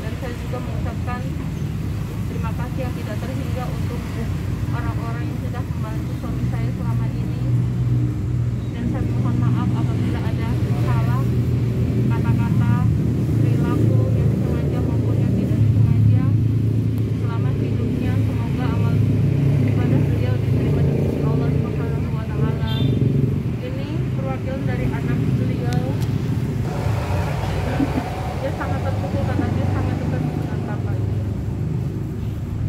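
A motor vehicle's engine runs steadily close by, a low rumble that grows stronger through the middle, under indistinct background voices.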